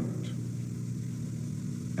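A pause in an old speech recording: a steady low hum and rumble of the recording's background noise.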